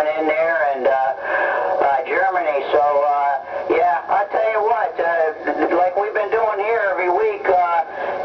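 A distant station's voice received on a CB radio tuned to channel 28 and played through the external speaker, talking continuously over a skip path.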